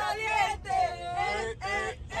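Excited voices of passengers shouting inside a moving minibus, over the low steady rumble of the bus.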